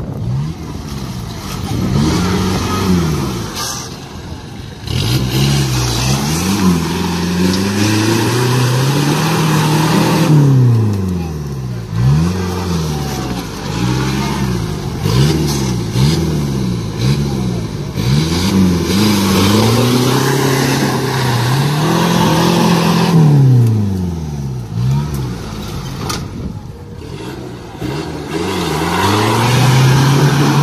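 Off-road 4x4's engine revved hard again and again, pitch rising and falling about a dozen times, as the vehicle struggles stuck in a deep mud hole with its mud tyres spinning and throwing mud.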